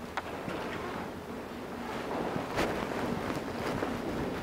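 A church congregation getting to its feet: low rustling and shuffling, with a faint knock near the start and another a little past halfway.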